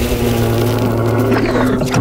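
Anime monster sound effect: one long, low roar held at a steady pitch over a noisy rumble.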